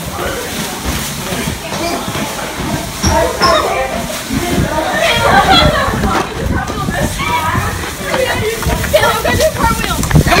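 Indistinct chatter of several young voices, over rubbing and bumping from a phone being carried against clothing while people walk.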